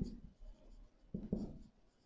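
Marker pen writing on a whiteboard: a few short, faint strokes just past the middle.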